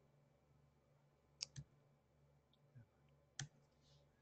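Near silence with a few small clicks of a computer mouse: two close together about a second and a half in, a faint one a little later, and one more shortly before the end, over a faint steady low hum.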